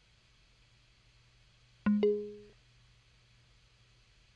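Yamaha DX7 FM synthesizer sounding two quick struck notes about two seconds in, the second higher, dying away within half a second: a preset being tried out while the banks are searched for the steel drum patch.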